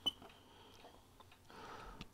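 A single soft click right at the start, a key press on a RigExpert AA-230 Zoom antenna analyzer, then faint room tone.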